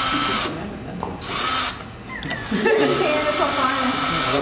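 Cordless drill/driver whining in short runs against a guitar headstock: it runs, stops about half a second in, gives a brief burst just after a second, then runs again through the second half while people talk.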